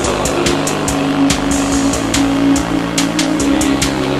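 Analog minimal-wave electronic music: steady synthesizer tones over a drum-machine beat. A falling, sweeping synth sound enters at the start.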